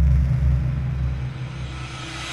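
Logo-intro sound effect: a deep rumble that eases off slightly while a hiss rises above it, building toward a hit.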